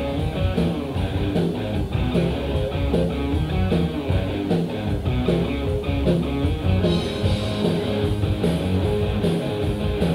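Live rock band playing through a PA: distorted electric guitar and electric bass over a steady drum beat.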